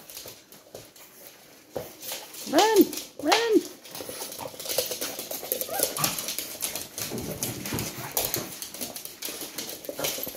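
Two young dogs playing rough on a hard floor: claws skittering and bodies scuffling throughout, with two short whines, each rising and falling, about two and a half and three and a half seconds in.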